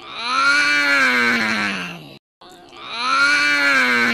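A long, drawn-out vocal cry, like a low moaning wail, rising then falling in pitch, heard twice with a short break between the two.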